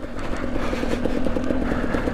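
KTM EXC 250 TPI single-cylinder two-stroke dirt bike engine running under load at a steady pitch while riding along.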